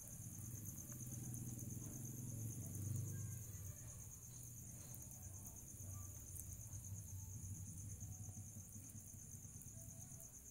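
Crickets chirping in a steady, fast-pulsing trill, with a low rumble underneath that swells about three seconds in.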